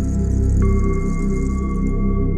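Healing-frequency meditation music, billed as 528 Hz and 777 Hz tones: a sustained low drone that pulses slowly, joined about half a second in by a steady, pure, bell-like tone that holds.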